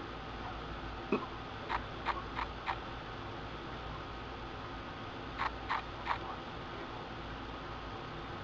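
Steady low room hum with a few faint, short clicks: small handling sounds of materials being wrapped onto a hook at a fly-tying vise. The clicks come in two loose groups, about a second in and again past the middle.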